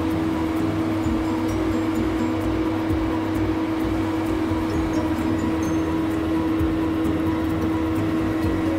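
Laser stripping machine with automatic roller feed running: a steady mechanical hum with one strong held tone and fainter tones above it.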